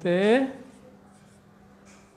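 Marker pen writing on a whiteboard: faint, short strokes as letters are written.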